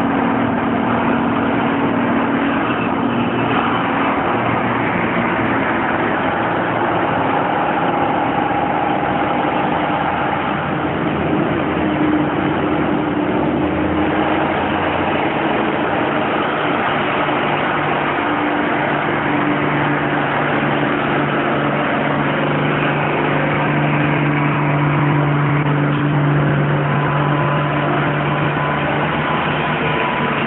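A motor running steadily, with slowly drifting humming tones over a noisy background; a stronger low hum comes in about two-thirds of the way through.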